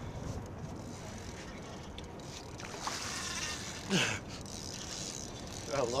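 Spinning reel's drag buzzing as a hooked striped bass pulls line off against it, starting about two and a half seconds in, with a sharp louder sound about four seconds in.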